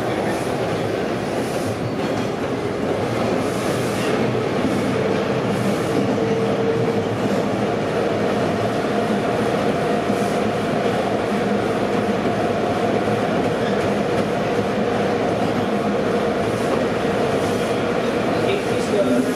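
Bombardier T1 subway car running at a steady speed through a tunnel, heard from inside the car: an even rumble of wheels on rail with a faint tone held at one pitch.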